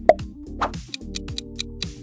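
Two short pop sound effects about half a second apart as the quiz answer options appear. From about a second in, countdown music plays with a steady, quick tick while the answer timer runs.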